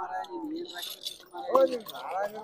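Small brass cattle bells and metal ornaments jingling as they are handled on a market stall.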